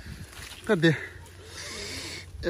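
A short two-part voice sound, falling in pitch, about three-quarters of a second in, then a soft rustle of apple-tree leaves as a hand moves through the branches near the end.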